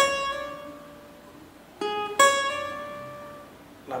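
Cavaquinho playing single plucked notes from a solo phrase. One note rings and fades at the start. About two seconds in comes a lower note, A-flat, then a higher one, C-sharp, which rings out.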